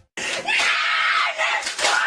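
A voice screaming loudly and harshly, starting a moment in and going on in a string of ragged, broken surges.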